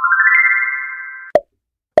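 Quiz sound effect marking the end of a countdown: a quick rising run of bell-like electronic notes that rings on together and fades. A short pop comes about a second and a third in.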